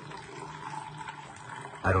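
Coffee poured in a thin, steady stream from a small paper cup into a larger paper cup, splashing into the liquid already in it.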